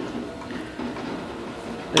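Hand screwdriver driving a wood screw into a countersunk hole in a wooden base plate, faint and uneven.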